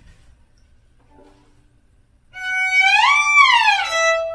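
Violin slide on a high string: after a quiet start, a bowed note comes in a little past halfway, glides up in pitch, holds briefly, then slides back down.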